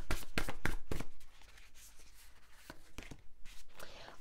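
A deck of cards being shuffled by hand: a rapid run of card flicks for about the first second, then a few scattered slaps and rustles of the cards.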